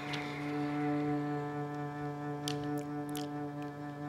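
Cello playing one long, steady bowed note, with a few faint clicks between two and a half and three seconds in.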